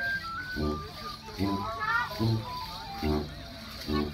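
Live folk music for a Morris dance: a stepping melody over a steady bass beat, a little more than one beat a second.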